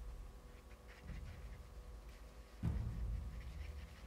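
Small stick scraping faintly on paper while two-part epoxy is stirred, with a dull thump against the table about two and a half seconds in.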